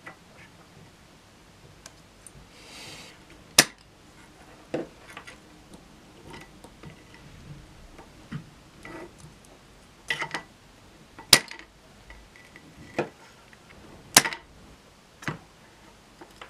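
Scattered sharp clicks and light metal clatter from hand tools and small parts while wires are worked loose from a guitar fuzz pedal's switch and potentiometers, a handful of louder clicks spaced several seconds apart over a quiet background.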